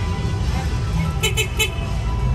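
Three quick high beeps of a small vehicle horn, about a second in, over a steady low rumble and background music.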